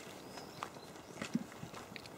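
Faint footsteps on a dirt and gravel track, a few soft, irregular steps over quiet outdoor background.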